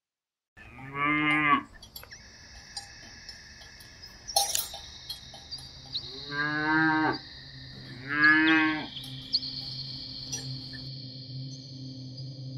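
Three cow moos, each about a second long and falling in pitch, heard near the start and twice more after the middle, over steady high ringing tones. A short sparkly swish comes about four seconds in.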